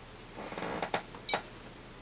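Front-panel buttons of a Siglent SDS2104X Plus oscilloscope being pressed: a brief rustle of a hand moving, then a few short sharp clicks, the last and loudest about a third of a second after the others.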